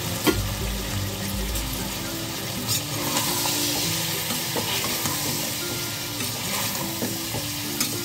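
Chicken, potatoes and soya chunks frying with spice powders in oil in a pressure cooker, stirred with a metal slotted spoon: a steady sizzle that grows louder about three seconds in as the stirring gets going. The spoon scrapes and knocks against the pot a few times, most sharply just after the start.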